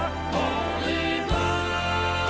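A southern gospel quartet sings with keyboard and band accompaniment. About a second in, the voices and instruments settle into a long held chord over a steady bass.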